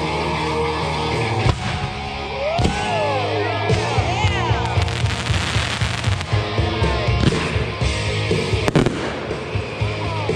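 Consumer fireworks going off over rock music, with repeated pops and bangs. About halfway through there is a stretch of dense crackling as a gold glitter burst opens, and a sharp bang comes near the end.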